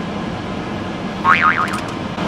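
Steady running noise inside a car cabin, from the engine and air conditioning. About a second and a half in comes a brief high-pitched squeak that wavers up and down in pitch.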